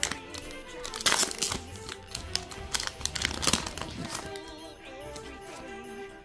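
Foil Pokémon TCG booster pack wrapper crinkling as it is handled and torn open, in a run of sharp crackles, loudest about a second in, over steady background music.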